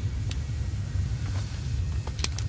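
A steady low rumble of background engine noise, with a couple of faint ticks.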